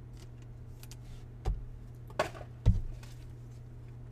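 Trading cards and a clear plastic card sleeve handled on a table: a few short taps and clicks, then a louder thump, over a steady low hum.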